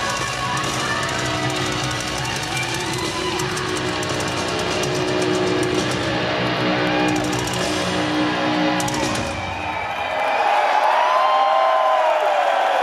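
Heavy metal band playing live with electric guitars and drums, recorded from among an arena crowd. About ten seconds in, the music stops and the crowd cheers and whoops.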